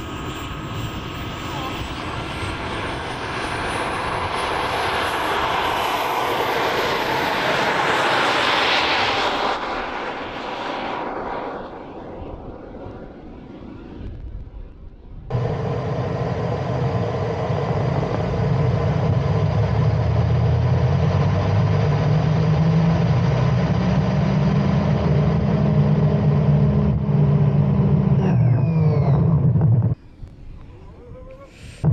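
An 80-size model jet turbine on an RC car, accelerating hard down a runway. A rushing exhaust noise with a high whine that climbs slowly in pitch builds for about eight seconds, then fades away. About halfway, it switches to a loud, close low rumble with steady tones from the turbine and rushing air, heard from on board the car.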